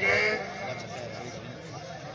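A man's voice draws out the end of a word in the first half second. Then come fainter, overlapping voices of a large crowd.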